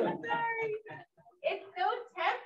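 A woman's voice saying a drawn-out "sorry", then a short pause and the start of more speech near the end.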